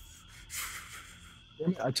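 A soft rustling hiss, strongest about half a second in and fading away over the next second, given as the sound of an unseen figure moving. A man's voice starts near the end.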